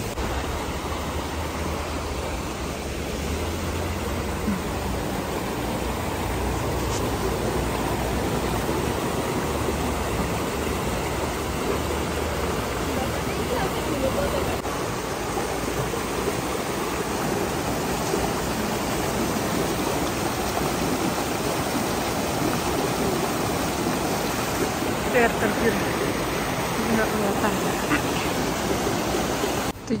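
Steady rushing of a shallow, rocky stream, with brief faint voices near the end.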